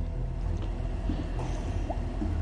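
Steady, muffled low rumble of water heard from a camera held underwater in a hot tub.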